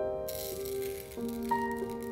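Chia seeds pouring from a glass jar into a shallow glass dish make a fine, steady rattle that starts a moment in. Soft piano music plays under it.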